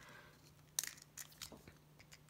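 A quiet pause with a faint steady low hum and a few small sharp clicks around the middle.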